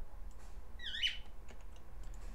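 Pet cockatiel giving one short squawk about a second in, dipping and then rising in pitch.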